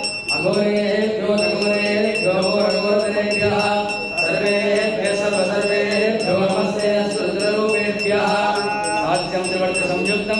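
Male voices chanting Sanskrit mantras in unison, with a bell rung rapidly, about four strokes a second, behind them; the bell pauses for about a second at the start.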